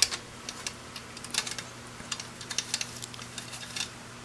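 Faint, irregular small clicks and ticks from the ribbon mechanism of a Royal 10 typewriter as a new silk ribbon is settled into the ribbon vibrator and guides, with a steady low hum underneath.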